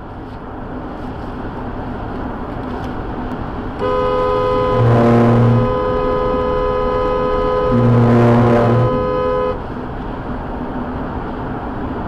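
A vehicle horn held for about six seconds over steady road noise, with two louder, deeper horn blasts within it, about three seconds apart.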